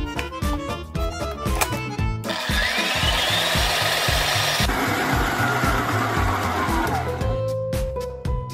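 Electric stand mixer running, beating thick chicken mince paste in a steel bowl. From about two seconds in to about seven seconds the motor is loud, with a whine that rises and later falls. Background music with a steady beat plays throughout.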